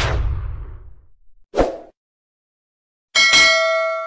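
Channel logo animation sound effects: a whoosh with a low rumble that swells and fades in the first second, a short sharp hit about a second and a half in, then a bright ringing chime of several tones near the end that rings on.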